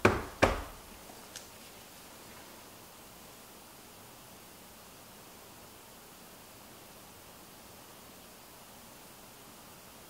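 Silicone loaf mold full of raw soap batter knocked twice against the table in the first half second to bring up air bubbles, followed by faint room hiss.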